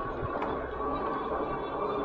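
Steady rushing ride noise of an EUY K6 Pro e-bike rolling at about 15 mph: wind on the microphone and its big-tread fat tyres on asphalt.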